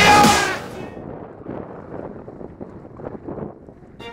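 Rock music cuts off under a second in. Then comes a downhill mountain bike rattling and rolling over a rough dirt trail, with small knocks from the bike and wind buffeting the microphone.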